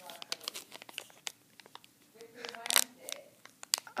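Blind-bag packaging crinkling and tearing as it is opened and handled by hand, in irregular crackles that thin out briefly in the middle.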